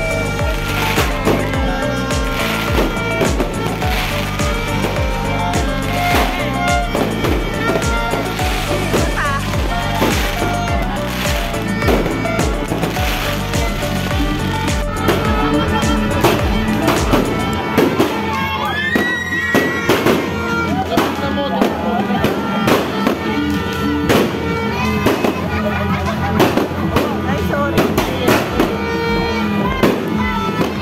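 Background music: a song with a sung vocal over a steady, even beat.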